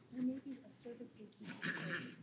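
Faint, distant voices murmuring in a large hall, with a brief hiss near the end.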